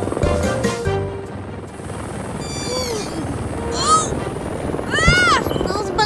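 Cartoon helicopter rotor running, with background music that stops about a second in. Three short squeaky calls follow, each rising then falling in pitch, the last one the loudest.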